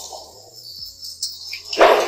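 Background music with low steady notes, and a door shut sharply near the end.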